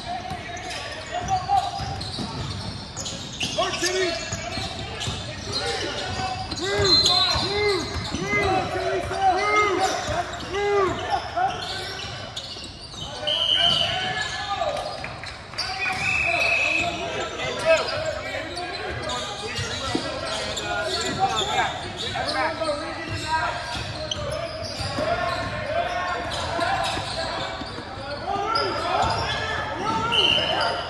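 Basketball game sounds in an echoing gym: a ball bouncing on the hardwood floor, footsteps and indistinct shouting from players and spectators.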